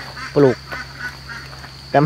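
Ducks quacking faintly in the background between a man's words, over a steady high-pitched insect drone.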